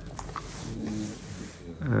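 Quiet handling of gift packaging, with a few light clicks and rustles of a cardboard box and cloth pouch, under a faint voice in the room. A man starts speaking near the end.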